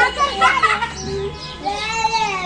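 Young children's voices, high-pitched calls and cries while they play together.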